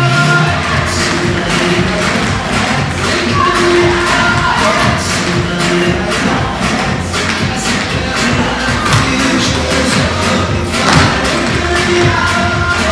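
Recorded dance music with a group of tap dancers' shoes clicking on the floor in rhythm over it, with one louder group strike about eleven seconds in.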